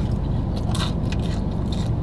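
Biting into and chewing a crunchy pizza crust, with a couple of short crunches, over a steady low background rumble.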